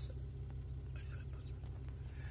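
Steady low rumble of a car driving along a road, heard from inside the cabin, with a brief soft hiss about halfway through.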